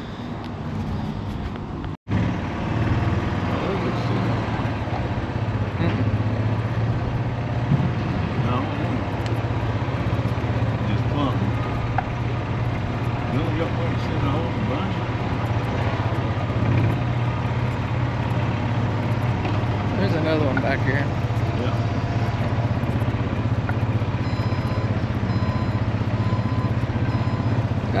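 Heavy-equipment diesel engine running steadily nearby at an even, low pitch, with a brief dropout about two seconds in. Faint high repeated beeps come in near the end.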